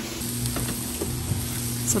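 Sweet and sour chicken in its sauce sizzling steadily in a frying pan on the stove.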